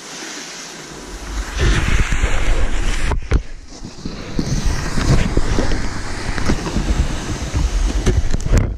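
Wind rushing over an action camera's microphone as a snowboarder sets off down the slope, loud from about a second and a half in, with the board scraping over packed snow. A couple of sharp knocks about three seconds in.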